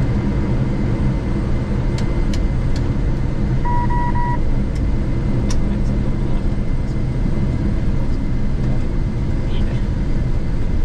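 Cockpit noise of a Gulfstream G650 on its landing rollout: a steady low rumble of engines and wheels on the runway, with a few sharp clicks and three short electronic beeps about four seconds in.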